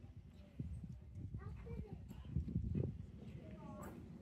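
Hoofbeats of a horse going round a sand showjumping arena: irregular dull thuds, loudest a little past the middle, with a voice heard near the end.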